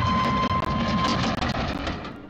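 Train sound effect: a steady whistle tone over a noisy rumble. The whistle stops a little after a second in, and the rumble fades out near the end.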